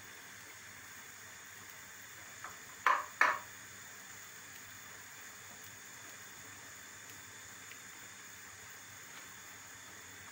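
Two short, loud handling noises close together about three seconds in, from hands working folded yufka pastry sheets and cheese filling on a wooden board, over a faint steady hiss.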